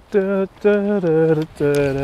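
A man's voice singing or chanting a wordless tune in a run of short held notes, close to the microphone.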